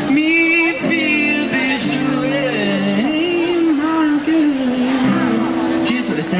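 A man singing a long, wavering held note that slides up and down, without clear words, over strummed acoustic guitar chords.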